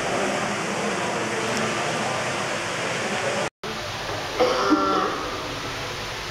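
Steady, noisy ambience of a large hall with faint indistinct voices in it, cut off abruptly about three and a half seconds in. Then a quieter room tone with a short spoken phrase about a second later.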